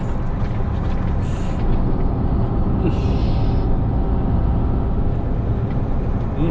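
Inside a truck cab while cruising: the truck's engine running steadily under road noise, with a brief hiss about three seconds in.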